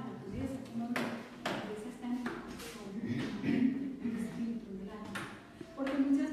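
Speech only: a woman preaching in Spanish.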